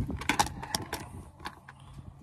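A few light clicks and rattles from a grain moisture meter's hard plastic carry case and the parts in its foam tray as it is opened and handled, over a steady low hum.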